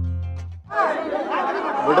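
Background music with sustained low notes fading out, then an abrupt cut about two-thirds of a second in to a crowd of people talking over one another.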